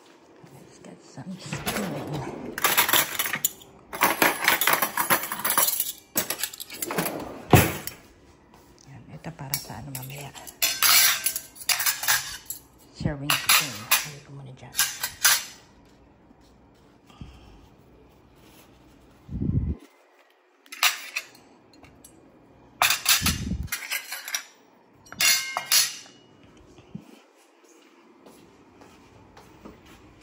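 Ceramic plates and cutlery clinking and clattering as a table is set, in many short bursts through the first half, then a few separate knocks later on.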